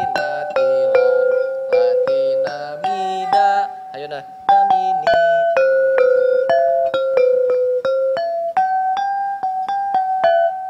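Gamelan metallophone with bronze keys, struck one key at a time with a wooden mallet, playing a melody of ringing notes, about two a second. The playing eases briefly about four seconds in, then carries on.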